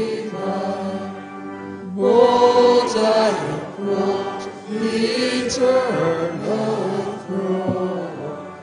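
Church choir singing a slow chant in phrases of long held notes.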